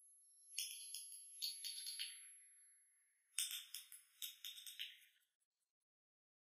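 A jingling rattle in two shaken bursts of about two seconds each, the second starting a little past the middle.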